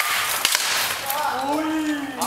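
Two sharp cracks of armoured fighters' weapons striking, one at the start and one about half a second later. A voice calls out in the second half.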